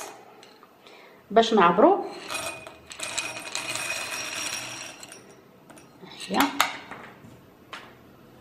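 Dried white beans poured by hand into a drinking glass, rattling and clinking against the glass for about three seconds as it fills. A woman's voice is heard briefly, twice.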